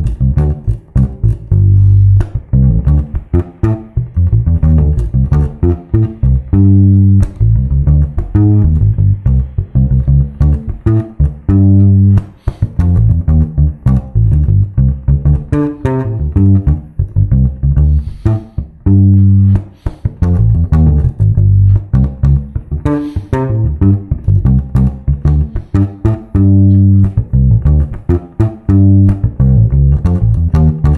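Electric bass guitar, a Precision-style bass played fingerstyle through an amp: a fast, busy groove over D minor with a lick phrase worked in an octave down, a string of rapid plucked notes with a few fumbled ones.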